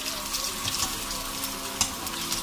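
Hot oil sizzling steadily around bread rolls frying in a pan, with one sharp click of the wire slotted spoon near the end.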